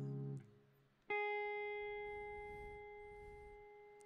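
Clean electric guitar: the last of a D-flat major 7 chord fades out in the first half second. About a second in, a single note is plucked and left to ring, slowly dying away.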